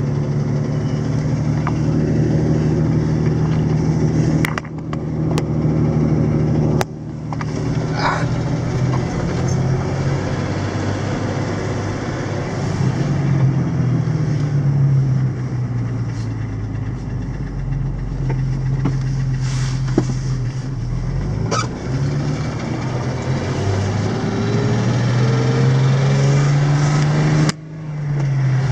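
Jeep Wrangler's engine running while driving, its pitch slowly falling and rising with speed, over a steady hiss of tyres on the wet road. The sound breaks off abruptly a few times.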